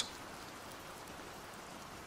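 Faint, steady rain falling.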